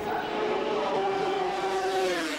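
250cc two-stroke racing motorcycle engine at high revs, holding one steady note that drops slightly in pitch near the end.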